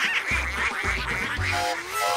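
A chorus of cartoon duck quacks, many overlapping in a fast chatter, over background music; the quacking stops just before the end.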